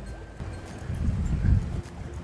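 Light background music under an irregular low rumble of wind buffeting the microphone, which swells to its loudest about a second and a half in.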